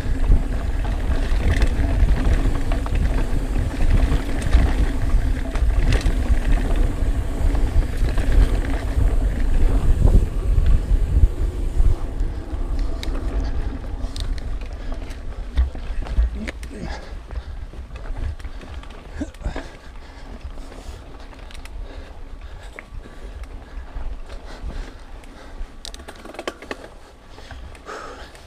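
Ibis Mojo HDR 650 mountain bike riding fast down a dirt singletrack: wind on the chest-mounted microphone and tyres rolling over dirt, with frequent rattles and knocks from the bike. The rumble is heavy for the first half and eases after about twelve to sixteen seconds as the pace drops.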